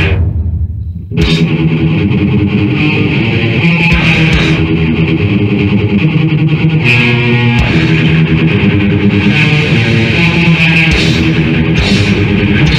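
Death/thrash metal with distorted electric guitars and drums. In the first second the band drops out to a fading low ringing chord, then crashes back in with a riff that runs on.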